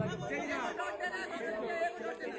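Chatter of several voices at once from people around a cricket ground, softer than the close voice that stops just as it begins.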